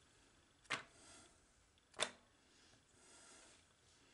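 Two short, light clicks about a second and a half apart, from hands handling a silicone resin mold and a small plastic measuring cup on a tabletop, over faint room hiss.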